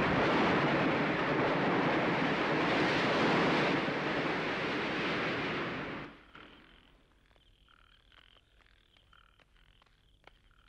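A loud, steady rushing noise, like heavy rain or surf, that drops away about six seconds in, leaving faint frogs croaking in short repeated calls.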